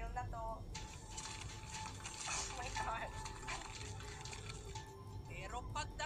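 Television broadcast audio played back and re-recorded: a voice briefly at the start and again near the end, with background music under a stretch of noise in between.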